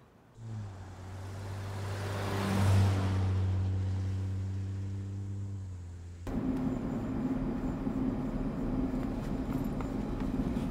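A vehicle drives past on a paved road, its steady engine hum and tyre noise swelling to a peak about three seconds in and then fading. About six seconds in it cuts abruptly to steady engine and road noise heard from inside a moving vehicle's cab, with the side window open.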